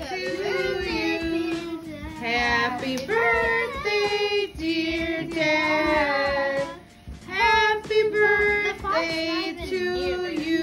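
Children and women singing together in long, held notes, with a short break about seven seconds in.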